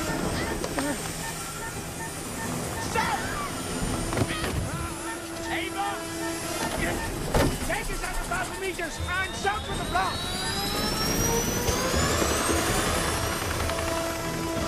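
A helicopter's turbine engine starting up about nine seconds in, its whine rising steadily in pitch, over dramatic film music.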